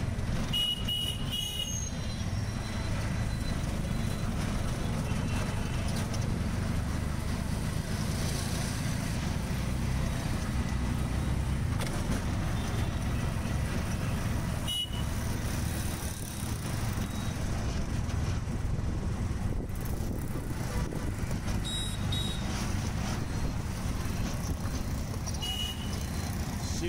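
Auto-rickshaw's small engine droning steadily in traffic, heard from inside the open cab. Short high horn toots sound a few times, near the start, about halfway through and near the end.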